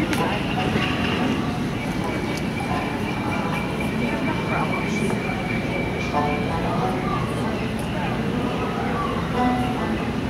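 Steady rumbling and rushing of a boat ride moving along its water channel through a dark show building, with indistinct voices and faint music in the background.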